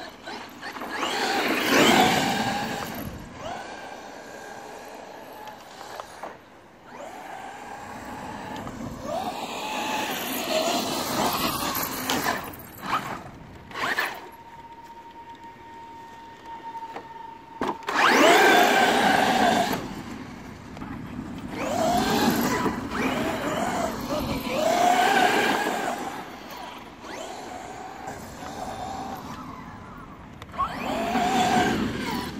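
Traxxas X-Maxx electric RC monster truck driving on grass: its motor and drivetrain whine up in several bursts of acceleration. Just past halfway a steady whine is held for a few seconds and ends in a sharp knock.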